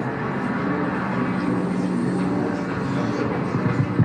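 Soundtrack of a presentation video played over a hall's loudspeakers: a steady bed of sustained low tones that shift in pitch now and then.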